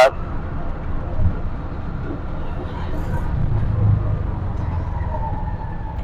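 Engine and road noise of a petrol-engined TVS King auto-rickshaw (bajaj) under way, heard from inside its open cabin: a steady low rumble.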